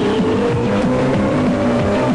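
Programme opening music with a steady, fast beat and a tone that rises slowly in pitch, which may be an engine-like sound effect.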